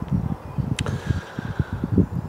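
Wind buffeting a clip-on wireless microphone outdoors: an uneven low rumble with one sharp click just under a second in.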